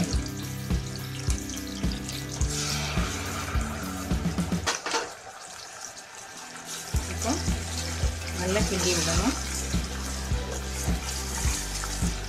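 Small onions and garlic sizzling in hot oil, with ground tomato purée poured in over them partway through. Background music with a steady beat plays throughout and drops out for about two seconds midway.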